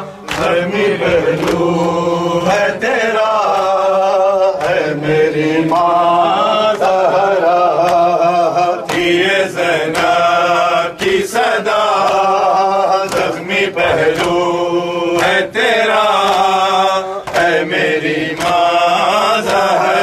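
Male voices chanting a nauha, a mourning lament, in long sung phrases led over a microphone, with the sharp slaps of mourners' hands striking their chests (matam) keeping time throughout.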